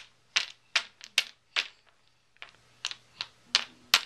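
Toy blocks knocking together as a baby handles them: a series of sharp, irregular clacks, about two a second.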